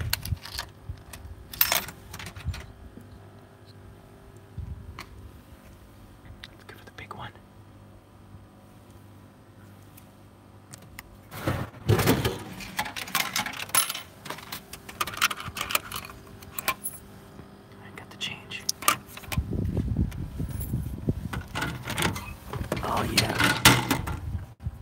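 Coins clinking as they are fed into a beer vending machine's coin slot, then, about halfway through, a heavy thud as a beer can drops into the dispenser tray, followed by rattling and knocking as the can is pulled out.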